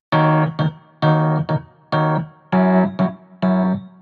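Rhodes electric piano playing five short chord stabs, each fading before the next, dry with no wah-wah or filter effect on it.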